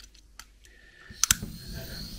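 Small Dremel butane torch being lit: a quick pair of sharp clicks from its igniter a little over a second in, then the steady hiss of the small flame burning.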